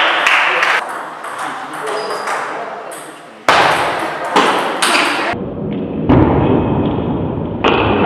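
Table tennis rally: the celluloid ball pinging off rubber bats and the table, with voices in the hall. The sound jumps abruptly in level a few times.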